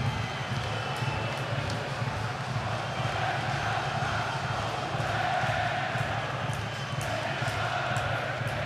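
Football stadium crowd noise just after a goal, a steady wash of cheering, with sustained chanting from supporters coming through about three seconds in.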